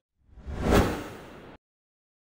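Whoosh sound effect for an editing transition to the end card: it swells to a peak just under a second in, fades, then cuts off abruptly.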